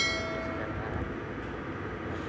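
Hard-shell suitcase's wheels rolling steadily over paving tiles, a continuous rumble. At the very start a bright ringing chime-like tone fades out within about a second.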